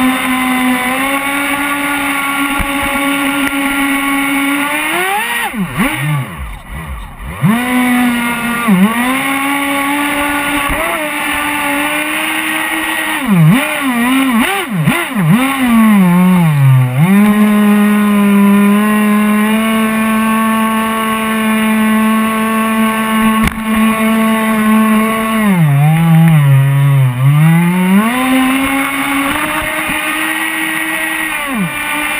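RC jet boat's motor running hard with a steady whine, its pitch dipping sharply and climbing back as the throttle is eased and reopened: about six seconds in, several quick dips around thirteen to sixteen seconds, and again near twenty-six seconds.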